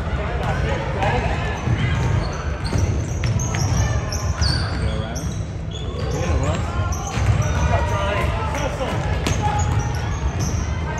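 A basketball being dribbled on a hardwood gym floor during live play, with sneakers squeaking on the court and players and coaches calling out.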